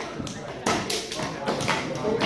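Juggling balls being caught in the hands: a few sharp taps, mostly in the second half.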